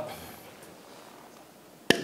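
Quiet gym room tone, then a single sharp knock near the end as a dumbbell is set down.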